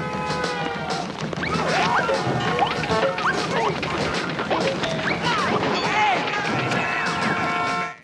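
Film soundtrack of a slapstick chase scene: crashes and impacts over a music score, with cartoon-style sound effects buried in the mix behind the impacts, many short whistling slides up and down in pitch.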